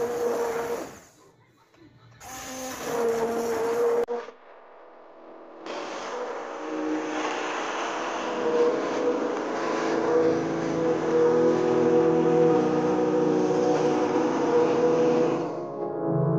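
SilverCrest hand-held stick blender motor running with a steady whine as it purées watermelon flesh into juice inside the rind. It runs in two short bursts near the start, then steadily for about ten seconds, cutting off just before the end.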